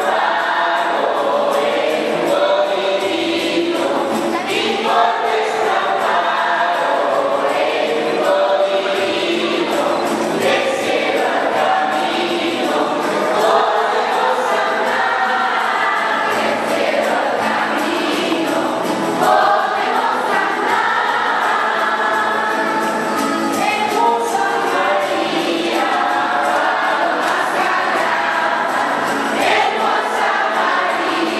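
A crowd of children and adults singing together, the group song of a Mexican posada asking for lodging, with many voices overlapping without a break.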